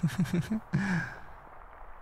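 A man's soft, breathy laugh in about five quick pulses, trailing off into a sigh.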